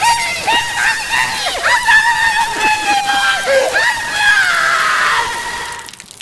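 A very high-pitched voice shrieking in a run of short, wavering cries for about five seconds, then trailing off near the end.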